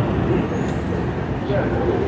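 Outdoor street ambience: a steady low rumble of road traffic, with faint scattered sounds over it.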